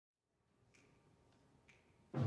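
Near silence with two faint finger snaps about a second apart: a slow count-off for the band.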